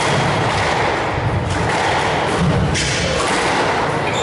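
A squash rally: dull thuds of the ball striking racket and walls, mixed with the players' footfalls on the court floor. There are sharper hits about one and a half seconds in and again near three seconds.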